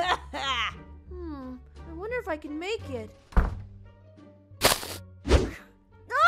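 Added sound effects over background music: a thunk about three and a half seconds in, a short whoosh about a second later, then a second thud right after it. Before them come a few wordless voiced sounds.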